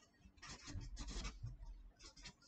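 A marker pen scratching across notepad paper in a run of short, faint writing strokes.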